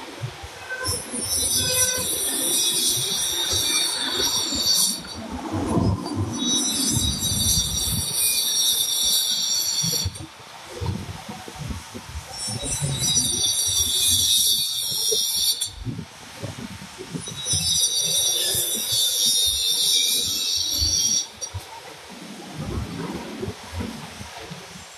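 Shrill, high-pitched buzzing in four bouts of three to four seconds each, each starting and stopping abruptly, over irregular low rumbling.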